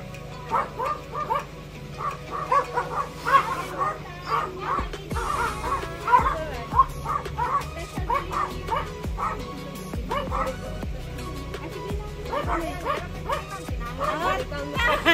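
A dog barking repeatedly in quick, high-pitched barks, several a second, pausing briefly now and then.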